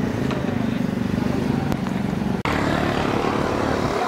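A motor vehicle's engine running steadily close by, a low pulsing drone. The sound cuts out for an instant about two and a half seconds in and comes back with more hiss.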